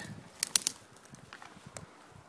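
A few faint sharp clicks and light rustling: three quick clicks about half a second in and one more near the end.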